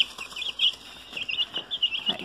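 A group of young chicks peeping, many short high peeps overlapping one another without a pause.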